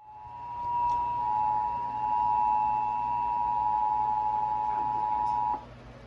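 Emergency Alert System attention signal: two steady tones sounding together, fading in and then cutting off suddenly about five and a half seconds in. It announces an emergency broadcast, here a child abduction (AMBER) alert.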